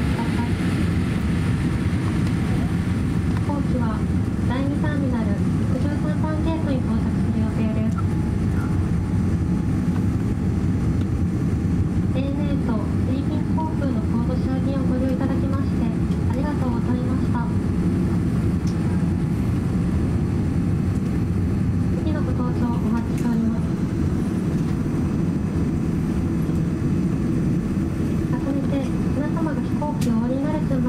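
A cabin attendant's announcement over the aircraft PA, heard over the steady low rumble inside the cabin of a Boeing 787-8 as it taxis after landing.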